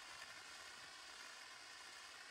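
Faint, steady hiss of a dry-chemical fire extinguisher discharging onto a propane-fed training fire, which goes out.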